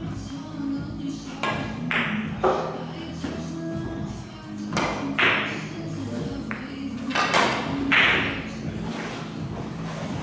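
A carom billiards shot: a series of sharp clicks spread over several seconds as the cue strikes the cue ball and the balls knock against each other and the cushions, with music playing steadily underneath.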